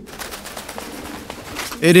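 Pigeons cooing softly over a steady background hiss, with a man's short call near the end.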